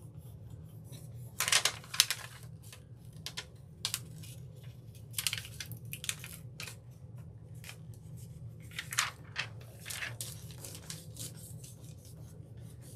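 Clear plastic backing sheet of a rub-on transfer crinkling as it is lifted and rubbed down over a wooden surface with a fingernail, in a series of short scratchy rustles. The rubbing presses down parts of the print that have not fully transferred.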